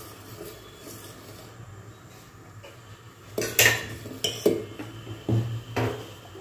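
A steel ladle stirring a thin porridge in a stainless-steel pot, clinking against the pot's sides. It is quiet for about the first three seconds, then about five clinks follow in the second half, the first the loudest.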